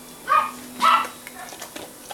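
A dog barking twice, about half a second apart.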